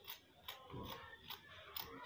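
Scissors cutting through fabric, a few faint snips of the blades closing.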